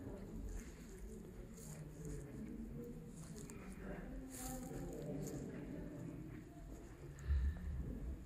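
Faint, indistinct voices murmuring, with a low bump near the end.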